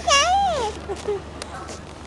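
A toddler's high-pitched, sing-song call that rises and then falls, lasting under a second at the start, followed by a few quieter voice sounds.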